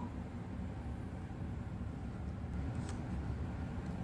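Steady low background hum, with two faint light ticks about two and a half to three seconds in as a picture book's paper page is turned.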